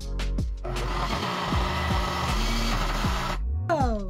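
Background music with a blender running. About a second in, the blender gives a steady whir that stops abruptly after under three seconds; it is likely pureeing the baby's broccoli. A falling tone follows near the end.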